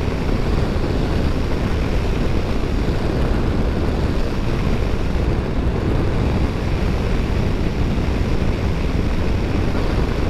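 Motorcycle cruising at a steady road speed: a constant rush of wind on the microphone mixed with engine and road noise, with no changes in pitch or sudden sounds.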